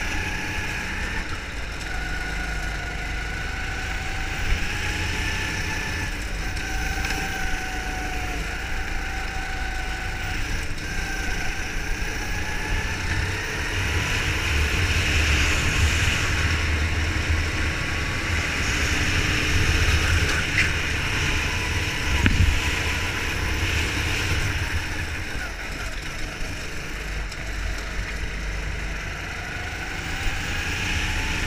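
Go-kart engine heard from onboard, its pitch rising and falling as the kart accelerates out of and slows into corners, over a steady low rumble of wind on the microphone.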